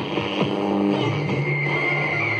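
Sansui MS-880 stereo's AM/FM tuner playing a snatch of music as the dial is turned between stations. A steady high tone comes in about a second and a half in.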